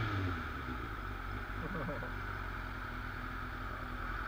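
Motorcycle engine dropping back from a quick throttle blip in the first moment, then idling steadily.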